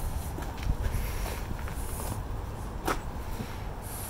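Handheld camera moved around outdoors: a low rumble with scattered light knocks, and one short sharp sound about three seconds in.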